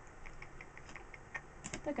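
A run of light, quick clicks, several a second, with a spoken word starting at the very end.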